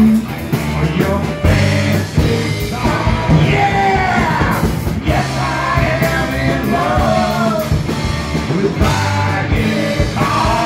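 Live rock band playing loud: a lead voice singing over electric guitars, keyboards, congas and a drum kit keeping a steady beat.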